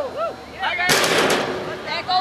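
Shouted calls from players or spectators, then a sudden loud burst of noise about a second in that lasts about half a second and fades.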